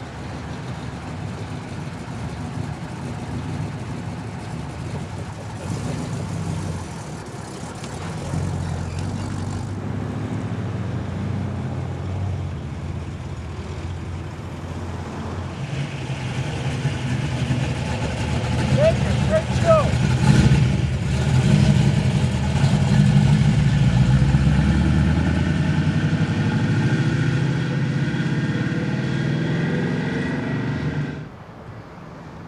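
Classic cars' engines running as they drive slowly past, a low exhaust rumble at first. From about halfway it gets louder and fuller as the next car pulls up and away, with some revving.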